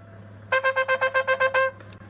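Background music with a trumpet-like brass line: about nine quick repeated notes on one pitch, starting about half a second in and stopping shortly before the end.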